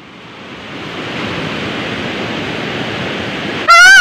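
Steady rushing roar of a river in flood, swelling over the first second and then holding even. A loud, high-pitched shout cuts in near the end.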